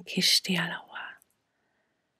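A woman's soft, breathy speech for about the first second, then silence.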